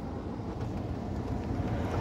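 Steady low rumbling background noise with a faint hiss over it, without change.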